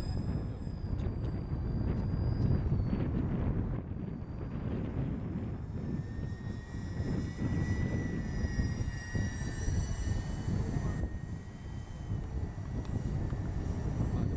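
Twin-engine Cessna 310-type aircraft flying past overhead, its engines a steady drone with a thin high whine that drifts slightly in pitch. A heavy low rumble of wind on the microphone runs under it.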